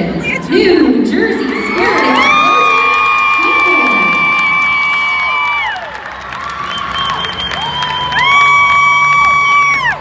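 Large crowd of cheerleaders screaming and cheering in celebration of a first-place result. The screaming comes in two long, high-pitched waves: one from about two to six seconds in, the other starting about eight seconds in and cutting off suddenly at the end, with a lull between.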